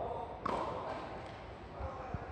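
A tennis racket strikes a ball once, a sharp hit about half a second in, with a short echo after it. Voices call around it.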